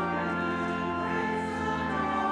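Church organ playing a hymn in held, steady chords, the harmony shifting a couple of times.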